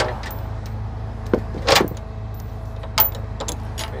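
Steel tow chain clinking and knocking against the bus frame as it is fed through and pulled up: a few sharp metallic clanks, loudest near the middle and about three seconds in, over a steady low engine hum.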